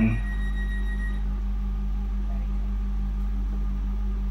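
Steady low hum and drone inside a train carriage between onboard announcements, even in level throughout.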